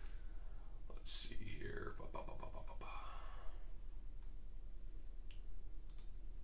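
Low, muttered speech under the breath for a couple of seconds, followed by a few light clicks of plastic graded-card cases being handled.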